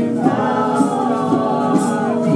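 A group of voices singing a song together in long held notes, with a bright accent on the beat about once a second.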